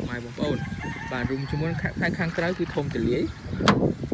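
A voice talking, then near the end a single sharp click, the loudest sound, as the 1996 Toyota RAV4's side-hinged back door is unlatched and swung open.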